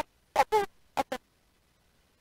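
A woman's voice in short, clipped fragments with dead silence between them, as if the microphone signal keeps cutting out. It stops about a second in.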